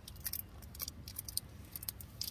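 Light, irregular clicks and small rattles of small hard objects handled close to the microphone as ASMR, several a second.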